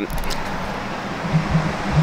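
Street traffic: a passing car's steady noise, with a low engine hum coming up in the second half.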